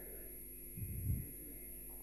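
Room tone through the talk's microphone: a steady low hum, with a faint soft low sound about a second in.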